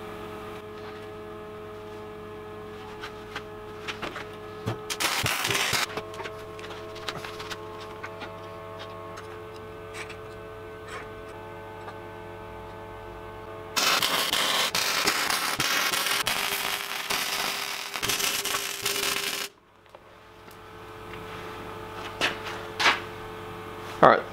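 Electric arc welder tacking steel: a short burst of arc crackle about five seconds in, then a longer weld of about six seconds from about fourteen seconds in that cuts off suddenly. A steady electrical hum from the welding machine runs underneath.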